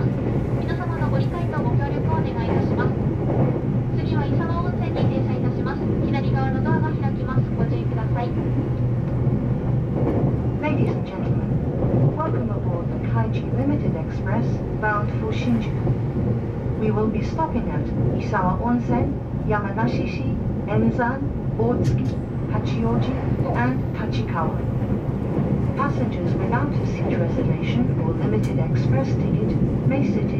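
Cabin noise inside a running E353-series limited express electric train: a steady low rumble from the wheels on the rails and the running gear, with people's voices over it.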